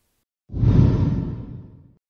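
A whoosh transition sound effect with a deep low boom, starting suddenly about half a second in and fading away over the next second and a half: a news-bulletin intro sting.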